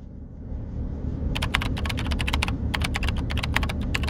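Rapid taps on a smartphone touchscreen, as in typing, starting about a second in and going on several taps a second.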